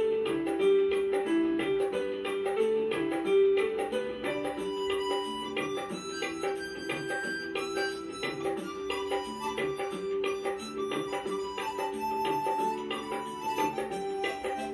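Harmonica playing the melody of a Hindi film song in sustained, gliding notes over a backing track with a steady percussion beat.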